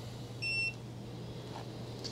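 A single short electronic beep from a Mustool MT8206 graphical multimeter as it is switched from its waveform display to reading AC voltage, heard over a steady low hum.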